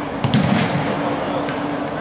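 A futsal ball struck hard with a sharp bang about a third of a second in that echoes around the sports hall. A lighter knock follows about a second later, over a steady low hum and faint voices.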